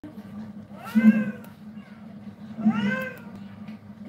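Domestic cat meowing twice, each meow rising then falling in pitch, over a steady low hum.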